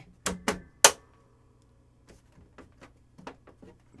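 Brittle, aged plastic case of a Power Macintosh all-in-one cracking and clicking as it is handled: three sharp cracks in the first second, the last the loudest, then a few faint clicks.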